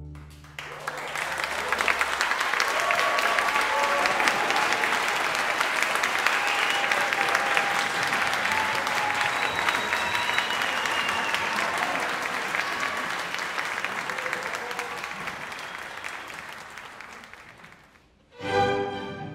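Audience applauding, starting about half a second in, holding steady, and dying away near the end.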